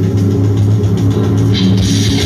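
Live rock band playing loud electric guitars with drums, a heavy, steady low end throughout. Near the end a brighter guitar strum comes in over it.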